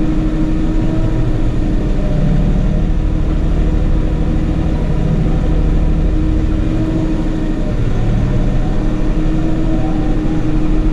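Tractor engine running steadily while driving with a round hay bale on the front loader, heard from inside the closed cab as a constant low rumble with a steady hum.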